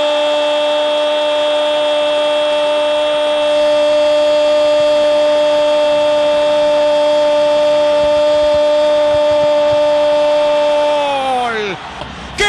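A football commentator's drawn-out goal call, one "Gooool" held at a single steady pitch for about eleven seconds, then sliding down in pitch and breaking off near the end.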